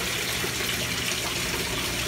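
Steady rush of water running through an aquaponics system, an even hiss with no breaks.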